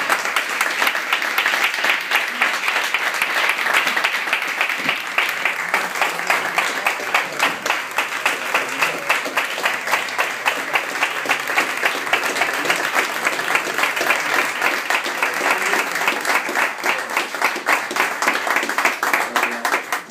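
Audience applauding: dense, sustained hand-clapping from a packed room. In the second half the claps fall into a more even beat.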